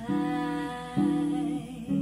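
Archtop hollow-body electric guitar playing clean jazz chords in an instrumental break: three chords struck about a second apart, each left ringing.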